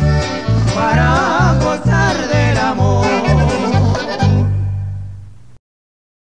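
A norteño band plays the instrumental close of a corrido: accordion runs over a bajo sexto and a bass thumping alternating notes on the beat. It ends on a long held chord that fades away, then cuts to silence near the end.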